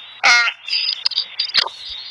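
A girl's short, high-pitched yell about a quarter of a second in, followed by a couple of sharp clicks from handling the phone.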